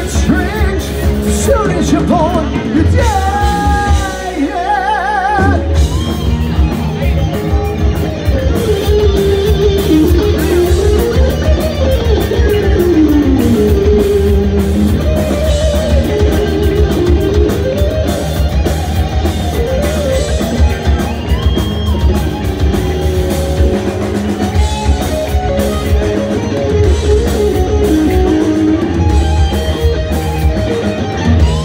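Live heavy metal band playing loud: electric guitar, bass and drums. A wavering held note comes about three seconds in, and then lead guitar lines sweep up and down over the driving rhythm.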